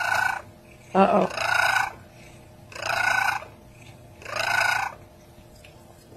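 A domestic cat meowing four times, each call short and about a second and a half apart.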